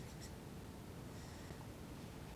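Faint scratching of a pen stylus writing on an interactive whiteboard, a couple of short strokes over quiet room tone.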